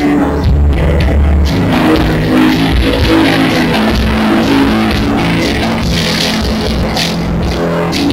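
A live band playing amplified music through a PA, with strong bass notes and chords running steadily throughout.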